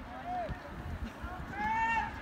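Shouting voices across a soccer field during play: a short call about half a second in, then a longer, louder yell near the end.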